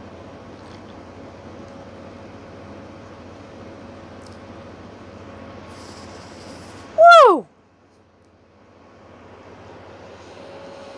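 A steady background hum, then about seven seconds in a woman's loud "Woo!", falling in pitch, her reaction to the drink's sour taste.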